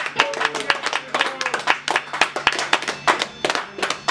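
Small audience applauding: many quick, irregular claps, with a few voices faintly over them.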